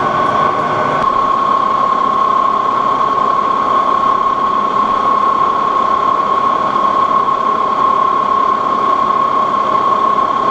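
Lodge & Shipley metal lathe running steadily with its chuck spinning, giving a constant high whine over the machine's running noise. A few faint ticks come in the first second.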